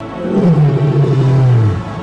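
Lion roar sound effect: one long roar that slides down in pitch and fades out near the end.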